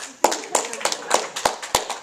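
A short spell of scattered hand claps, about a dozen irregular sharp smacks over a second and a half, as from a few people clapping at once.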